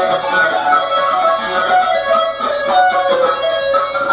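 Electric guitar playing a fast lead phrase of quick single notes high on the neck, on the top strings in F sharp minor pentatonic.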